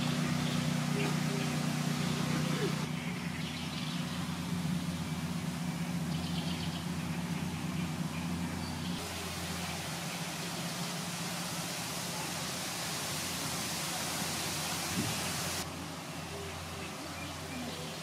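Outdoor ambience: a steady low hum under a hiss of background noise, with faint voices. The background shifts abruptly three times, about 3, 9 and 15 seconds in.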